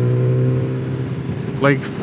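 Kawasaki Z900RS inline-four engine running at a steady cruise under way, its pitch easing down slightly, on an aftermarket ECU flash.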